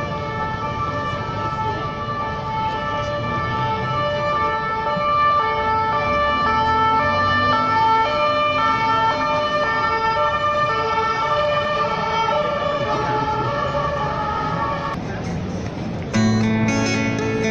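Two-tone emergency-vehicle siren alternating between two pitches, loudest in the middle and stopping about a second before the end, over city street traffic.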